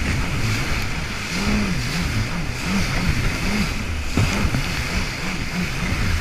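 Rescue jet ski's engine running through choppy surf, its pitch rising and falling about twice a second as the throttle and the hull work over the waves, under a wash of spray, water and wind on the microphone. One brief knock a little after four seconds in.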